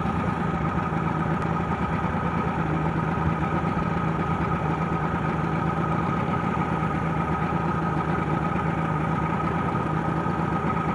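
Boat motor running steadily at low speed: a constant low hum with a steady higher whine over it.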